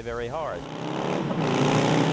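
Motorcycle engine coming closer along a city street over passing traffic, its sound growing steadily louder. A man's voice ends about half a second in.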